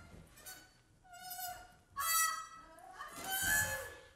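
Trumpet played in free improvisation: three short separate notes, each higher than the one before, the last the loudest and breathiest.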